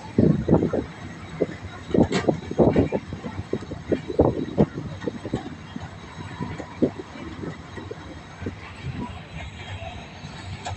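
Mariazellerbahn narrow-gauge train moving, with irregular knocks and clatter from the running gear and track. The knocks are heaviest in the first half and thin out after about five seconds.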